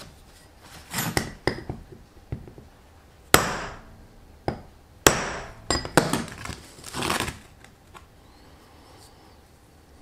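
Steel tools and a steel plate knocking and clattering on a metal workbench, with two sharp metal-on-metal strikes about three and five seconds in that ring briefly.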